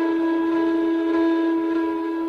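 Indian flute holding one long, steady note.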